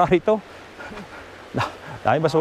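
Steady rush of a shallow river running over stones, with one short, sharp call about one and a half seconds in.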